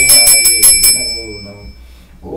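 Hand-held puja bell being rung rapidly during worship. The strikes stop about a second in and the ringing dies away.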